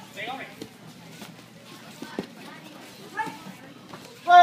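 Scattered voices and short shouts echoing in a gym hall, with one dull thud about two seconds in as a kick lands on a padded taekwondo chest protector during sparring.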